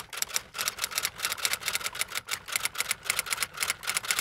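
Typewriter-style typing sound effect: a rapid, even run of keystroke clicks, about five or six a second, as title text is typed out on screen letter by letter.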